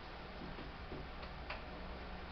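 Quiet room with a low steady hum and a few faint light clicks, the clearest about one and a half seconds in.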